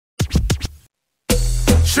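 A short burst of DJ record scratching on a turntable. After a brief silence, a soca track starts with a heavy bass line and drums about a second and a half in.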